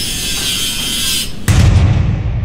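Logo-intro sound effects: a bright, sizzling hiss of sparks, then about one and a half seconds in a heavy impact boom with a low rumble that fades away.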